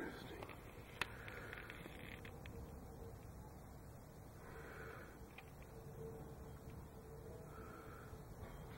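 Low background noise, with one sharp click about a second in.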